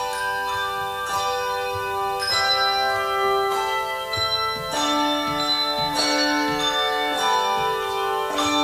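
A handbell choir playing: chords of handbells struck together in a steady beat, a little under two strikes a second, each ringing on and overlapping the next.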